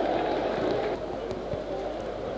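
Steady background noise from a near-empty football stadium, with faint distant voices.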